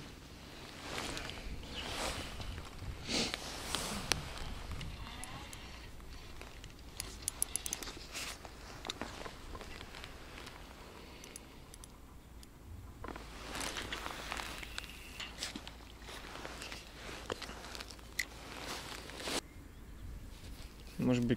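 Faint rustling and handling noises from an angler working with fishing tackle, with scattered clicks and a short quick run of clicks about seven seconds in.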